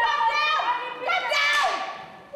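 Several children's voices chattering and calling out over one another, with a brief noisy burst about one and a half seconds in.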